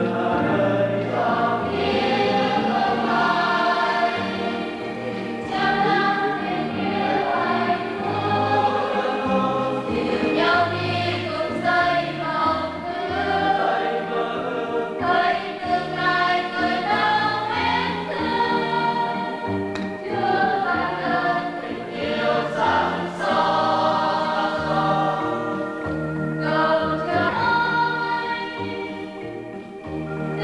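Church choir singing a hymn, with low held accompaniment notes under the voices.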